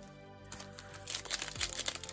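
Foil wrapper of a baseball card pack crinkling and tearing as it is pulled open by hand, a dense crackle that starts about half a second in. Background music plays throughout.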